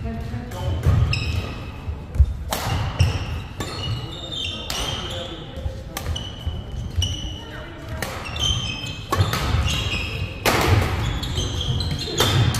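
A doubles badminton rally: rackets smacking the shuttlecock in quick exchanges, many sharp hits, mixed with court shoes squeaking and thudding on the wooden floor, in a large hall.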